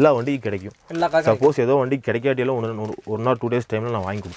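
Speech only: a man talking in a low voice, with no other sound standing out.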